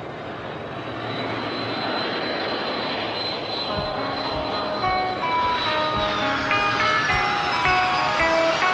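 Jet airliner engines: a steady roar with a high whine that drops in pitch near the end. Guitar notes come in over it from about four seconds in.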